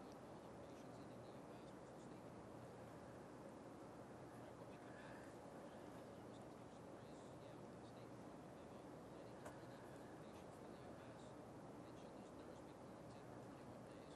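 Near silence: studio room tone with a faint steady hiss, and one faint click about nine and a half seconds in.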